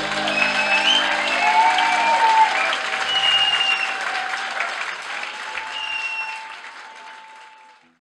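Audience applause after a surf-rock instrumental, with the band's last electric-guitar chord ringing and dying away over the first couple of seconds. The applause fades out near the end.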